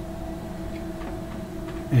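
Steady hum made up of a few held low tones, with no distinct events: the background noise of a small radio room full of powered equipment.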